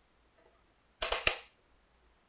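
Shoelace pulled through a carbon-fibre lace-lock mechanism on a prototype cycling shoe, giving a quick run of sharp clicks about a second in that lasts about half a second, as the lock takes up the lace and tightens it.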